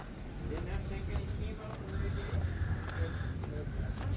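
Faint voices talking over a steady low rumble of outdoor background noise.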